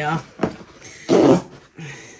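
Cardboard box's tear strip being ripped, a short rough rip about a second in, with a light tap on the cardboard before it.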